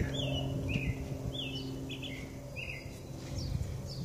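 A small bird chirping over and over, short falling chirps about every half second, over a steady low hum that fades out about two-thirds of the way through.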